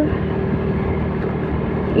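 Steady engine and road noise from a vehicle moving along a road.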